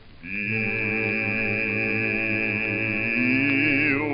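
Early acoustic-era phonograph recording of a song: a long, steady chord is held with no vibrato, and a lower part shifts pitch about three seconds in. The sound is narrow and boxy, with nothing above the middle treble.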